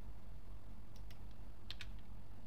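Computer keyboard keys being typed: a few short clicks in two quick pairs, over a steady low hum.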